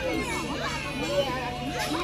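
Several people's voices overlapping, children's voices among them, talking and calling over one another.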